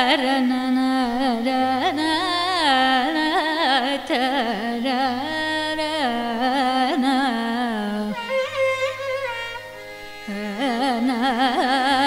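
Carnatic vocal music: a woman sings a gliding, ornamented melody with violin accompaniment, going softer for a moment about eight seconds in.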